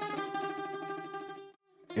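Bouzouki strings plucked and left ringing, slowly fading, then cut off abruptly about a second and a half in.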